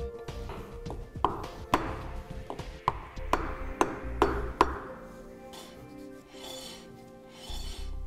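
A hammer tapping a wooden block to seat a metal dust cap onto a trailer hub: about eight sharp taps, some ringing briefly, between about one and five seconds in. Background music runs underneath.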